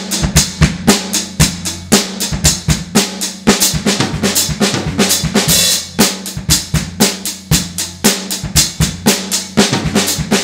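Drum kit played with sticks at a quick tempo: a steady, dense run of snare and bass-drum strokes in a repeating pattern, several hits a second.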